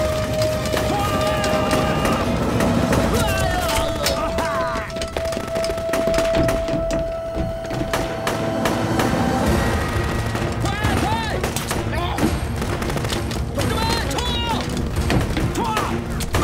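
Dramatic battle soundtrack: background music under repeated sharp gunshots from pistols and rifles. A long held note runs through the first half, and men shout and yell in the later part.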